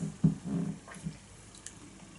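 A man's low closed-mouth "mmm" with a lip smack in the first half-second after sipping beer, followed by a few faint mouth clicks.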